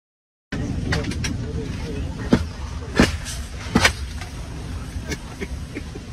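A brief dropout, then a few sharp knocks, about three in the space of a second and a half, over steady background noise with faint voices.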